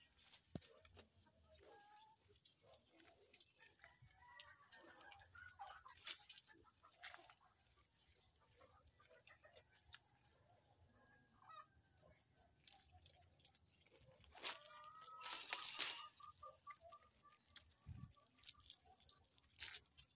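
Chickens clucking faintly, with a quick run of short, evenly spaced clucks in the last few seconds. A brief loud rustle comes a little past the middle, over a steady high-pitched hiss.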